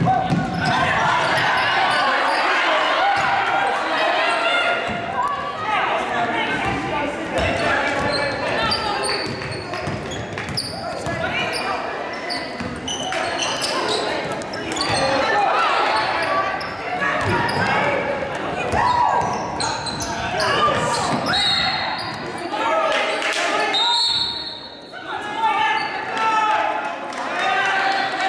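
Basketball game sounds echoing in a gym: a ball bouncing on the hardwood court under a steady mix of players' and spectators' indistinct voices and shouts.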